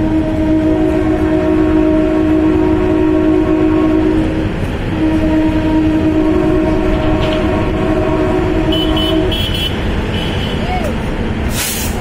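A DEMU train's horn sounding two long blasts of about four seconds each, over the steady rumble of the moving train. A brief sharp noise comes near the end.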